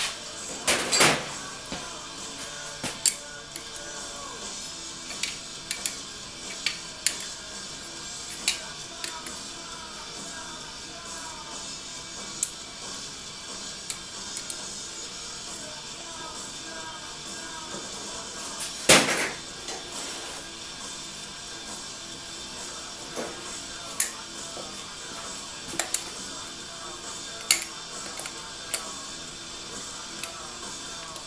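Metal clinks and knocks of sockets and a socket wrench being handled and fitted onto bolts on an engine block, irregular and scattered, with two louder knocks about a second in and about 19 seconds in. A radio plays music in the background throughout.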